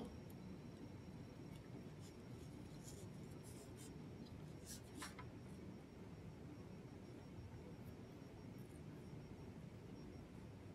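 Faint, intermittent scratching of a small wire brush scrubbing inside a tracheostomy inner cannula.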